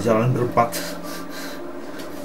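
A man's short, strained vocal sound, like a pained groan, mixed with rubbing noise in the first moment.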